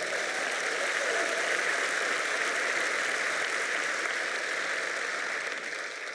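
Large audience applauding, a steady wash of many hands clapping that starts to die away near the end.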